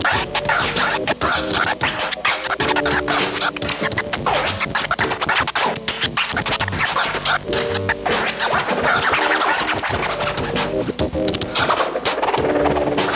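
Turntable scratching: a record pushed back and forth under the hand and chopped by fast crossfader cuts, over a backing beat with a recurring melodic phrase.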